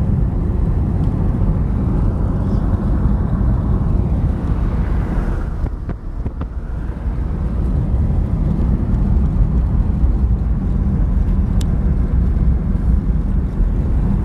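Car cabin noise while driving: steady engine and tyre rumble, low and continuous, with a brief drop in level about six seconds in.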